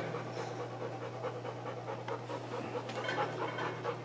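A dog panting softly, over a steady low hum.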